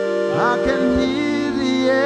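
Worship music: held instrumental chords, with a singing voice gliding up into a note about half a second in.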